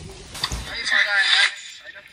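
A person's high-pitched wavering cry, starting about half a second in and lasting about a second, then dying away.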